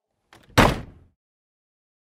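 A single thud-like cartoon sound effect about half a second in, dying away within about half a second, marking the cut to a picture collage; then silence.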